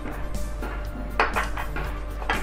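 Green chilies dropped into a pan of water, a short clatter of clicks about a second in.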